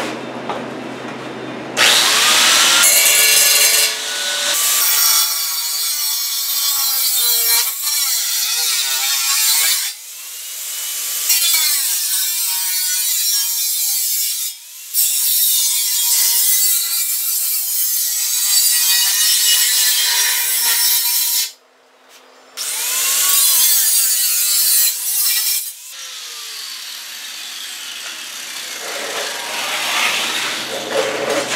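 Angle grinder with a cut-off wheel cutting through a sheet-steel cab corner patch panel held in a vise, its pitch sagging and rising as the wheel bites into the metal. It stops for about a second around two-thirds of the way through, then starts and cuts again.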